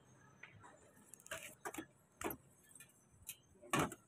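Large kitchen knife chopping meat on a cutting board: about six irregular sharp knocks, the loudest near the end.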